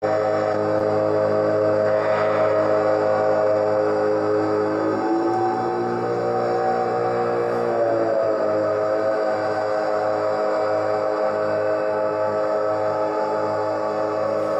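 Live electronic drone music: layered, sustained tones holding steady, with some of the middle tones bending in pitch and settling back between about five and eight seconds in.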